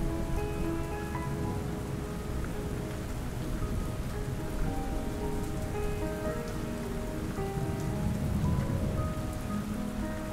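Steady rain falling, under soft background music of slow, held notes that shift in pitch.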